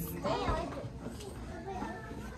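Children's voices: indistinct chatter and play sounds with no clear words.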